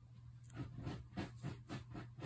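Faint rubbing and scratching of fingertips pressing a dried-out nail polish strip onto a toenail: a quick series of soft strokes, about four a second, starting about half a second in, over a steady low hum.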